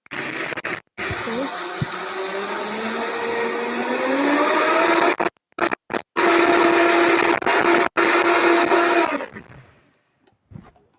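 Vitamix blender crushing ice into a milkshake. The motor's whine rises in pitch as the speed is turned up, then holds steady at high speed. The sound cuts out briefly a few times, and the motor switches off and winds down near the end.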